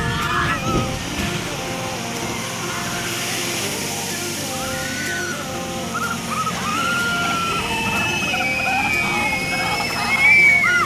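Water-splash ride boat hitting the pool at the foot of the chute and ploughing through it: a long rush of spray and churning water. Riders' excited cries come in over the water about halfway through.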